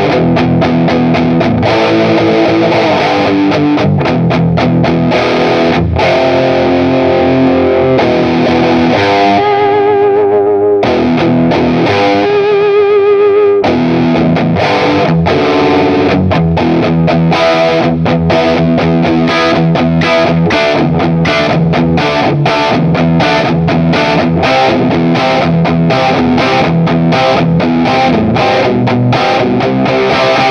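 EART electric guitar on its bridge pickup, played through a high-gain amp channel: distorted rock riffing. About ten seconds in there is a stretch of held lead notes with vibrato, then rapid, rhythmic chugged chords.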